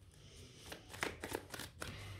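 A deck of oracle cards being shuffled in the hands: a soft papery rustle with a quick run of card snaps in the second half.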